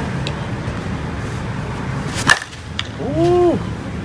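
A slowpitch softball bat striking a pitched softball once, a single sharp crack a little over two seconds in. A moment later a man gives a short rising-and-falling call, over a steady low outdoor rumble.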